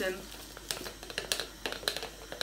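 Small glass jar and tin can being handled together, giving a run of light, irregular clicks and taps of glass against metal.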